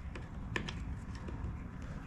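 Light, scattered clicks and taps of hands handling the plastic engine housing and spark plug wire of a Husqvarna string trimmer, over a low steady hum.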